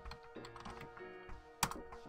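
Computer keyboard keystrokes typing a short command, ending with a sharper key strike about one and a half seconds in as the command is entered.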